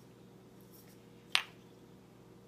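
A glass spice jar gives a single short clink, about a second and a half in, as it is handled on the kitchen counter; otherwise quiet room tone.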